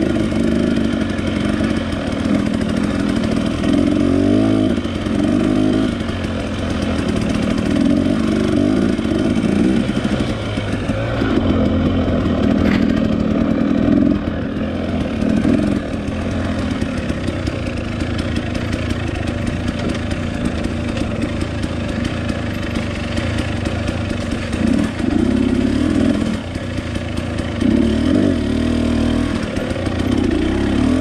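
Husqvarna dirt bike engine running under load, the revs rising and falling again and again as the throttle is opened and closed.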